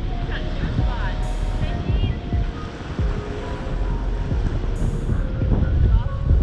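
Wind buffeting the camera microphone with a steady low rumble, over surf washing onto the beach. Faint voices come through it now and then.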